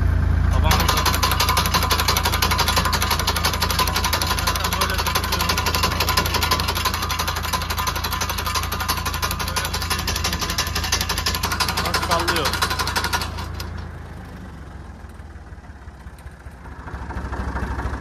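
Tractor-driven walnut tree shaker working: a fast, continuous mechanical clatter as the machine shakes the tree through its steel cable, over the steady run of the tractor engine. The clatter starts just under a second in and stops suddenly about 13 seconds in, leaving a quieter engine hum.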